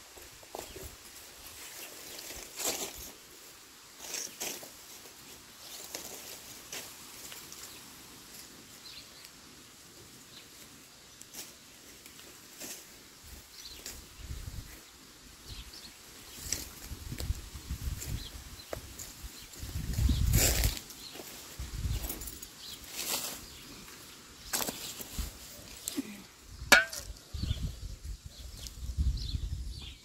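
Outdoor yard ambience: scattered light rustles and clicks, with low rumbling swells in the second half and a brief falling squeak with a sharp click near the end.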